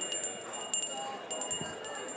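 Small metal bell hanging from a miniature pony's halter, ringing over and over in quick, uneven jingles as the pony moves its head.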